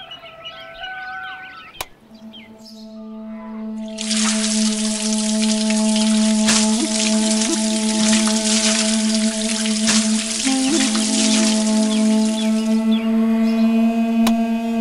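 Water running from a plastic tap in a steady stream, starting about four seconds in and stopping shortly before the end. It plays over a sustained low musical drone.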